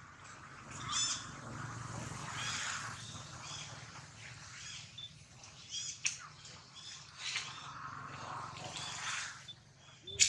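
Long-tailed macaques at close range: scattered short, high-pitched squeaks and chirps, with scratchy rustling of fur and hands over a steady low background hum.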